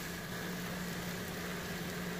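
Diced onion and garlic frying gently in ghee in a pan, a soft, steady sizzle, over a steady low hum.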